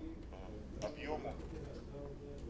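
Faint, halting speech: a man's low voice making a few short murmured sounds, well below the level of the talk around it. A steady low hum lies under it.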